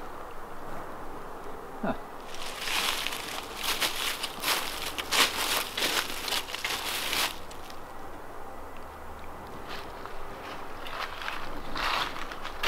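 Footsteps crunching and rustling through dry fallen leaves for several seconds, starting about two seconds in, then softer rustling.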